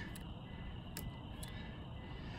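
A few faint, sharp clicks from the Apex forward-set trigger in a Smith & Wesson M&P 2.0 frame with its slide off, as the trigger is pulled and the sear engages, over steady low background noise.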